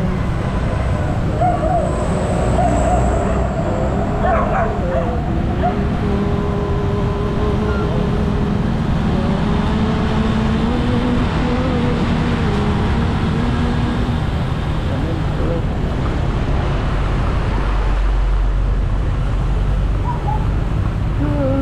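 Motorcycle running in traffic with steady engine and road rumble, and dogs in cages on a pickup truck whining and yelping, with wavering cries through much of the stretch and a few sharp yips in the first few seconds.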